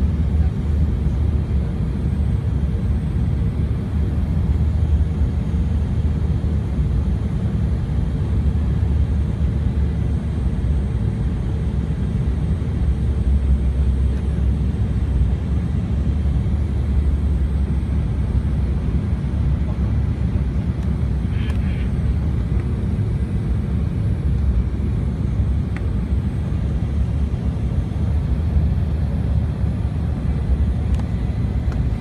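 Steady low rumble of an airliner's jet engines and rushing air, heard from inside the passenger cabin on final approach.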